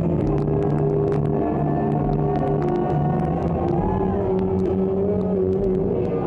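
Rock band playing live on amplified electric guitars and drums: long held guitar notes, one bending in pitch about four seconds in, over steady cymbal hits, loud and heavy in the low end.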